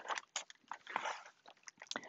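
Paper rustling with light, irregular clicks from a hardcover picture book being handled as its pages are turned.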